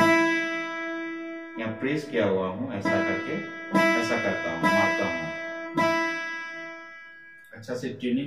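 Acoustic guitar lead notes picked on the second string with the first string sounding along with it, so two strings ring together on much the same note; a handful of single notes, each left to ring and fade, one at the start and the rest between about three and six seconds. A voice comes in briefly about two seconds in.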